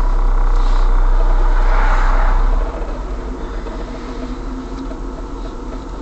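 Road and engine noise inside a moving car's cabin: a steady low rumble, with a rush that swells around two seconds in. The noise drops suddenly about two and a half seconds in.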